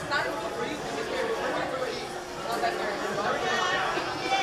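Chatter of several people talking at once among the riders seated on a roller coaster train waiting in the station. No single voice stands out.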